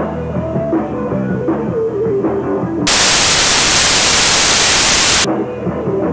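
Live hard rock band playing, electric guitar, bass and drums, broken about three seconds in by a sudden burst of loud, even static hiss that drowns the music for over two seconds and cuts off as abruptly. The hiss has the sharp start and stop of a recording glitch.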